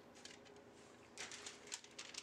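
Near silence: faint room hiss, with a few faint light clicks in the second half.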